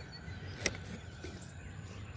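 Quiet outdoor background with light handling noise, broken once by a single sharp click a little after half a second in, as blister-carded Hot Wheels cars are handled in a cardboard box.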